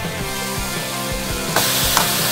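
Background music, with diced raw chicken breast starting to sizzle in hot oil in a frying pan about one and a half seconds in.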